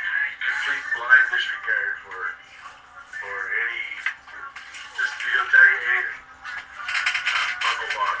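Indistinct voices over background music, with a louder noisy stretch near the end.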